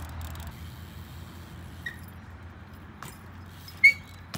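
Steady low outdoor rumble with a few faint clicks, then a short, sharp clink with a brief ring near the end as a BMX bike is hopped off the concrete.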